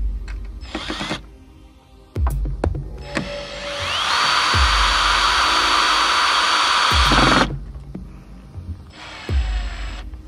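Hitachi cordless drill running with its bit in a plywood panel: a brief trigger pull about half a second in, then a longer run from about three seconds in, the motor rising in pitch and holding steady for about four seconds before it stops. Background music with a slow beat runs underneath.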